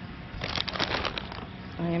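Brief crackling and crinkling of plastic being handled, a quick run of small clicks lasting under a second, about half a second in.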